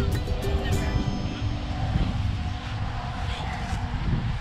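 Background music with held, changing notes over a low, uneven rumble.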